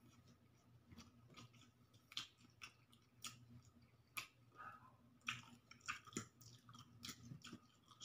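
A person chewing a mouthful of pancit canton (stir-fried instant noodles): faint, irregular wet smacks and clicks of the mouth, a few each second, over a low steady hum.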